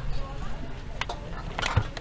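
Steady background bustle of an outdoor street-food stall, with a single sharp click about a second in and a brief snatch of a voice near the end.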